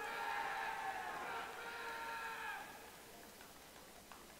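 A long, held 'woo' cheer from someone in the audience. It bends down in pitch and dies away about two and a half seconds in, leaving quiet arena room noise.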